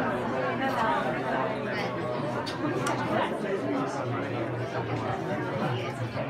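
Many people talking at once: the overlapping chatter of a crowded room, with no single voice standing out.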